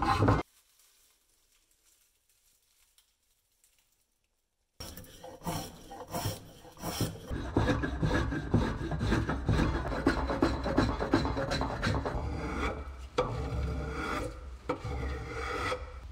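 After about four seconds of near silence, a spokeshave cuts along a eucalyptus (Australian oak) axe handle in quick repeated scraping strokes, peeling off wood shavings.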